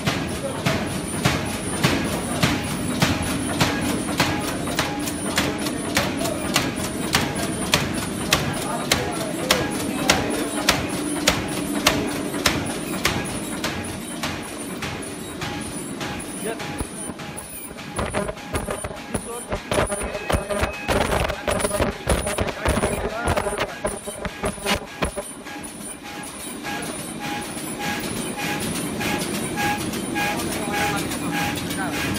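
Four-line zipper bag making machine running: a steady hum under regular clacking strokes, about one and a half a second. In the second half the strokes give way to louder, more irregular knocks.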